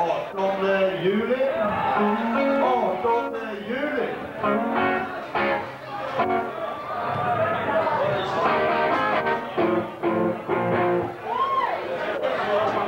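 Electric guitar played through a stage amplifier in loose, unstructured phrases with notes bent up and down, like a guitarist warming up or checking the amp before a song. Crowd voices can be heard underneath.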